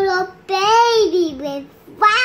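A young boy's high voice singing his story in a singsong: one phrase ends just after the start, then a longer sung phrase begins about half a second in.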